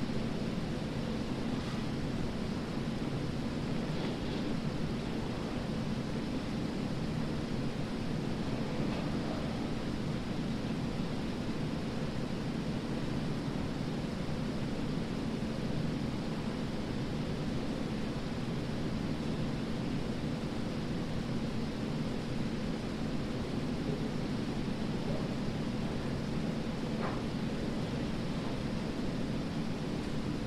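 Steady, low background noise with a faint constant hum and a few faint ticks.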